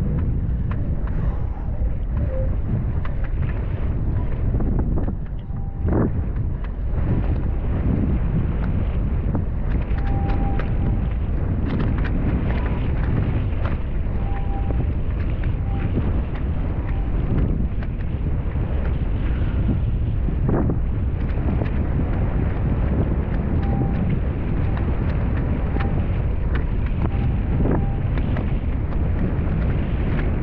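Wind buffeting the camera microphone while wing foiling on the water, a steady heavy low rumble with water noise mixed in. A few brief sharp knocks or splashes cut through it, the clearest about six seconds in and again about twenty seconds in.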